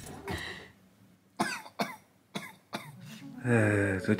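Four short, sharp coughs from a person, coming about half a second apart. Near the end a steady low musical tone starts, louder than the coughs.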